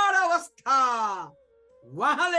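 A man's voice declaiming a psalm verse: a loud word drawn out, then a long vowel sliding down in pitch. Faint background bansuri flute music plays a steady note underneath.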